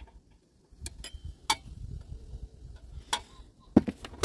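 A few short, sharp clicks and taps spread over a few seconds, the loudest near the end: a pointed stick working the small DIP switches and handling the plastic housing of a wind-turbine charge controller.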